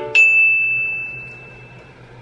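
A single bell-like 'ding' sound effect, struck once just after the start, its one clear high tone fading away over nearly two seconds. It marks an on-screen counter ticking up.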